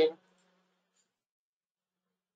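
A man's voice finishing a word, then near silence.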